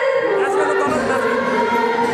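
A woman singing a Nepali dohori folk song into a microphone, holding long, drawn-out notes that step in pitch.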